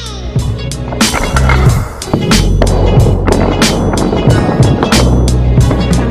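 Background music with a steady drum beat and heavy bass.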